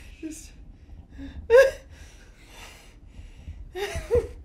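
A man gasping and breathing sharply, with one short, loud pitched cry about a second and a half in.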